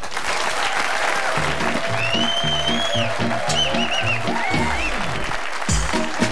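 Studio audience applauding, joined about a second and a half in by the show's closing theme music with a steady rhythmic bass line.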